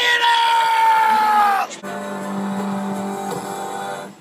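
A man's long, high-pitched scream, held and sliding slightly down in pitch, cutting off after a second and a half or so. Then a steady held musical chord.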